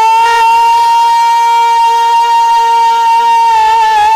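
Live rasiya folk music: one long high note held steady over a lower drone, with no drumming, wavering slightly near the end.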